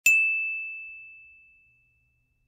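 A single ding sound effect: one clear, high chime tone struck once at the start and ringing out, fading away over about a second and a half.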